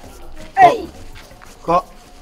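Two short yelps: a falling one about half a second in and a briefer one near the end.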